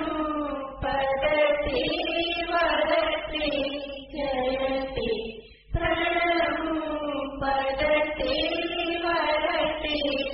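Several voices chanting a devotional hymn together in long held, wavering phrases, with brief pauses for breath about a second and a half in and again about halfway through.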